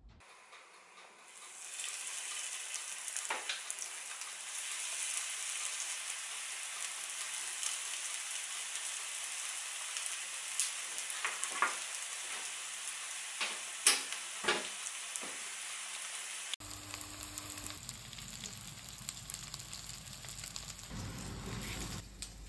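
Panko-breaded salmon shallow-frying in oil in a frying pan: a steady sizzle with scattered sharp pops and crackles. It starts about a second and a half in and stops at a sudden cut about three-quarters of the way through, after which a quieter noise follows.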